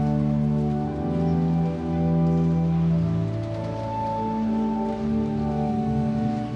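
Pipe organ playing slow, sustained chords with a deep bass, the pitches shifting every second or two.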